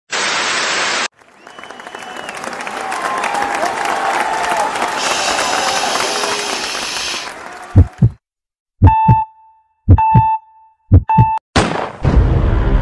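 Edited sound-effect intro. A short whoosh is followed by a long rising wash of noise. Then come paired heartbeat thumps, with three electronic starting beeps about a second apart, and a sharp burst near the end as the sprint begins.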